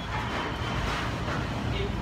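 Steady low hum and noise of a working bakery kitchen, with faint voices in the background.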